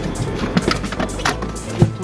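Several sharp knocks and clatters from a cargo-area panel and tonneau cover being handled and pushed into place, the loudest near the end, over background music.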